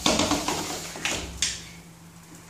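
Hard plastic wheels of a child's ride-on tricycle rolling and clattering over the floor, with a few sharp knocks, the noise fading toward the end.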